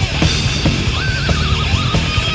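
Old-school thrash metal played live, a band with distorted guitars and steady drum hits, loud and dense. A high wavering note comes in about a second in and runs on for most of the rest.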